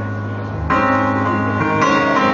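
Keyboard played live between sung lines, holding sustained chords. A new, louder chord is struck about two-thirds of a second in and another near the end.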